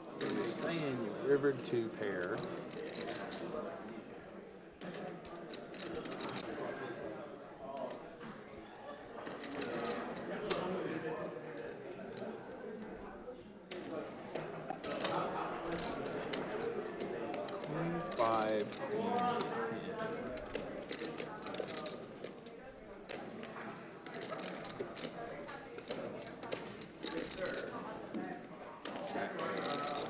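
Murmured background conversation, with poker chips clicking again and again as a player shuffles a stack of them in his hand.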